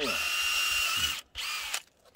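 Cordless drill boring a sap tap hole into a gorosoe maple trunk: the motor runs at steady speed for about a second, stops, then gives a shorter second burst before cutting off.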